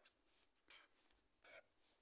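Green felt-tip pen writing on notebook paper: a few short, faint strokes of the tip scratching across the page.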